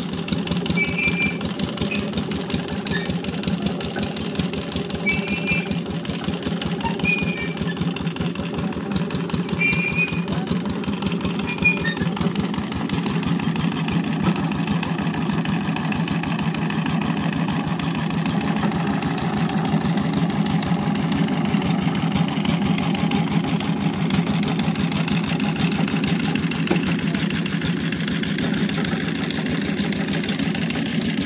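Small stationary engine of a tube-well drilling rig running steadily with an even, rapid thudding beat.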